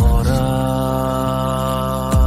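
Song: a deep low hit opens, then a male singer holds one long steady note over a sustained low backing.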